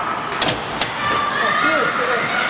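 Ice hockey rink sound from a skating camera: a steady rush of skate and wind noise, broken by two sharp clacks about half a second and just under a second in, with distant shouting voices.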